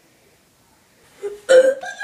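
Near quiet at first, then about a second and a half in a sudden loud vocal outburst from a person, short and broken.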